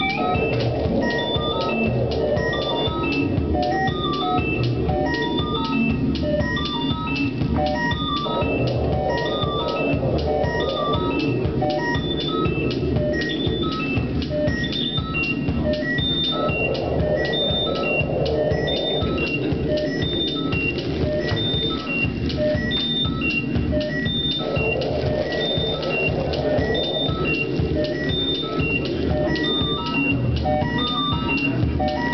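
Live electronic music played on synthesizers: a repeating sequence of short, high notes over a steady beat. A fuller mid-range chord comes in for about three seconds roughly every eight seconds.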